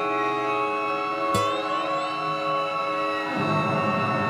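Violin, viola and cello holding a sustained chord of steady, overlapping notes, with lower notes coming in near the end. A single sharp click sounds about a second and a half in, followed by a brief upward slide in pitch.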